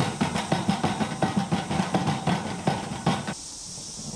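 A stick stirring primer inside a square metal paint can, knocking rapidly against the can with a light ringing, about five knocks a second, stopping just over three seconds in.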